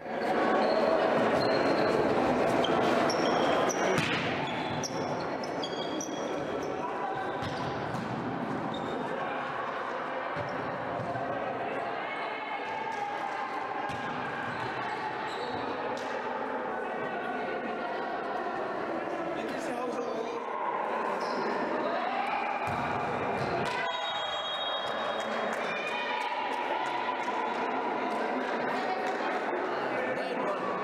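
Live sound of an indoor volleyball match in a gym hall: players' voices calling and chattering, with the sharp knocks of the ball being struck and hitting the floor.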